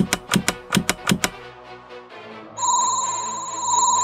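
A quick run of sharp clicks in the first second or so, then a steady electronic ringing tone that starts a little past halfway and wavers in level, over background music.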